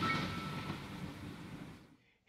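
Tail of a short intro sound effect for an animated logo: a noisy swell with a low held tone, fading steadily away and stopping just before the end.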